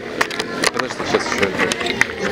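Indistinct voices talking, with scattered sharp clicks and knocks of things being handled.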